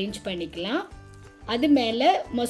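A voice narrating over background music, with a short pause in the speech about a second in where only the music's steady tones are heard.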